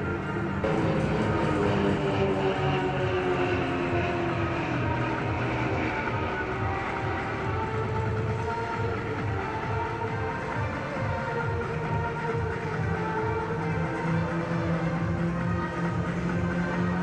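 Music over the propeller drone of Extra 330LX aerobatic planes flying in formation. The engine note falls in pitch over the first few seconds as the planes pass.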